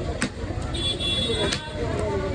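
Busy outdoor market background with people talking and traffic. A short high horn-like toot sounds in the middle, and there are two sharp knocks about a second and a half apart.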